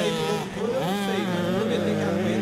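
85cc two-stroke motocross bike engine revving as the rider crosses the track, its pitch rising and falling with the throttle, then settling into a steadier drone about a second in.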